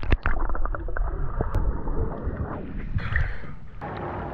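Pool water splashing and sloshing around a camera dipped below the surface. There are heavy thumps of water right at the start, then a muffled underwater wash with small bubbling clicks.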